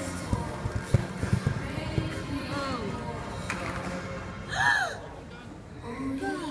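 A horse's hooves thud on the arena's soft surface several times in the first two seconds as it canters past, over background music from the arena's sound system. Near the end comes a short, loud rising-and-falling voice.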